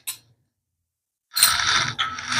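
After a stretch of silence, a dense, even sizzling starts about a second and a half in, from the tomato-and-pea masala frying in the kadhai.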